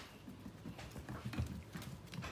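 Dachshund puppies' paws pattering and scrabbling on a hardwood floor as they play, with a run of irregular light knocks and thumps that are loudest about halfway through.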